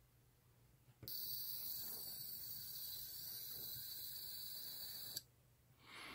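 Faint, steady high-pitched whine and hiss from an ultrasonic speaker driven by a 555-timer oscillator near 20 kHz through an LM386 amplifier. It comes in about a second in and cuts off suddenly about five seconds in.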